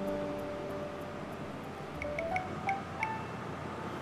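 Background music score: soft held tones, then about halfway through a run of short, light chime-like notes.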